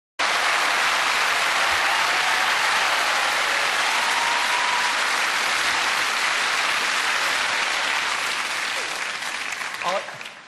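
Theatre audience applauding steadily, the clapping dying away in the last second.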